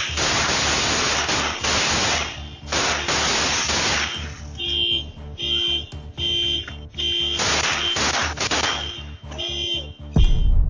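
Loud, harsh noise on a home security camera's microphone for about four seconds. Then an electronic alarm beeps steadily, about once every two-thirds of a second, until the end.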